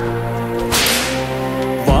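A single whip lash, a short sharp hissing swish about three-quarters of a second in, over held musical notes.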